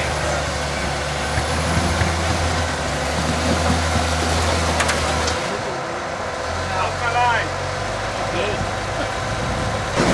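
Engine of a modified Jeep Cherokee rock crawler running under load as it climbs over boulders, its note dropping away about five and a half seconds in and picking up again a second later.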